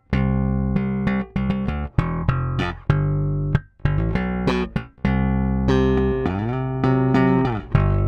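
Solo electric bass strung with DR Dragon Skin+ strings, played fingerstyle: a run of plucked notes, some cut short with brief stops between them. About six seconds in, a note's pitch glides up and is held, then glides back down near the end.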